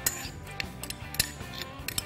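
A metal spoon clinking against a metal bowl while stirring parsley into couscous, several sharp clicks, over soft background music.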